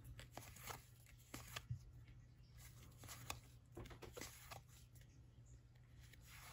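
Faint rustles and light ticks of baseball trading cards being flipped through by hand, each card slid off the front of the stack and tucked behind, over a low steady hum.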